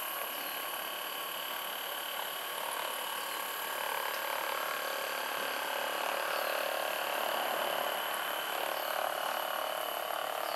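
Hyperice Hypervolt percussion massage gun running steadily with its flat head pressed into the thigh muscle, a continuous mechanical buzz that grows slightly louder in the middle.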